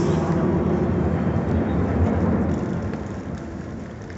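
Stadium crowd applauding, a broad reverberant wash of clapping that gradually dies away.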